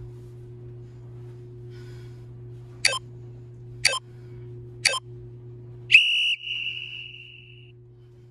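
Workout interval timer counting down: three short beeps a second apart, then one longer beep lasting about a second and a half that signals the start of the next timed interval. A steady low electrical hum runs underneath.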